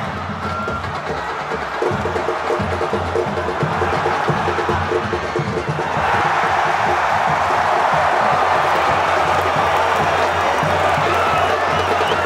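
Football stadium crowd singing over a steady rhythmic beat, swelling into a loud, sustained cheer about halfway through as a goal goes in.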